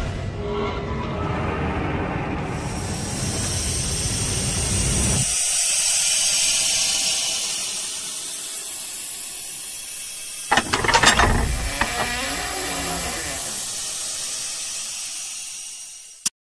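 Sound effects of an animated countdown intro: a deep rumble that stops about five seconds in, a high hiss that swells and slowly fades, and a burst of sharp mechanical clicks and clanks about ten and a half seconds in.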